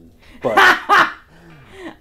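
A person laughing loudly in two quick bursts about half a second and a second in, trailing off into softer chuckling.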